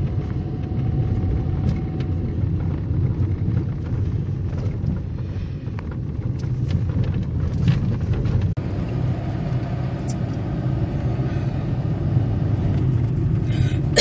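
Car driving, heard from inside the cabin: a steady low rumble of engine and tyre noise, with a few light knocks from the road.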